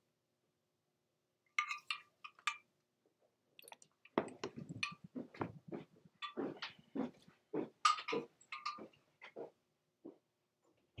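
A person moving about: a few light clicks, then a run of irregular soft knocks and footsteps, about three a second, over the second half.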